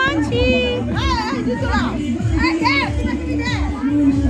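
Loud party music with a steady bass line, under a crowd of high-pitched voices from women and children shouting and chattering.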